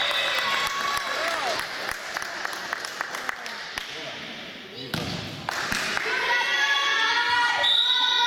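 Voices echoing in a school gym during a volleyball match, with a volleyball bouncing on the hardwood floor and a run of short sharp clicks in the middle. From about halfway, many voices call out together.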